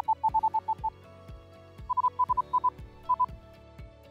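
Zoom Essential Series handy recorder's voice-guidance reference beeps as its headphone volume is turned with the scroll wheel: runs of short, quick beeps, one beep per step, with the later runs a little higher in pitch than the first. Soft background music plays underneath.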